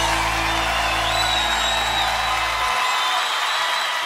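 Closing bars of a country-rock band recording: a final sustained chord with guitars ringing over a held low bass note, which stops about three-quarters of the way through while the upper wash of cymbals and instruments rings on.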